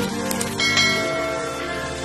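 End of an electronic intro jingle: the beat drops out, and a bell-like chime rings over a held chord, slowly fading.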